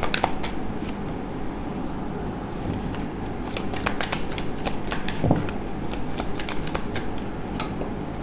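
A tarot deck being shuffled and handled, giving many irregular crisp card snaps and flicks, with one soft thump about five seconds in.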